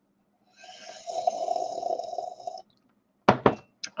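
A person slurping hot coffee from a cup: one drawn-in sip of about two seconds, air pulled in with the liquid. A few short clicks follow near the end.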